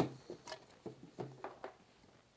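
A blender jar being taken off its base and handled on a tabletop: one sharp click at the start, then several light knocks and taps.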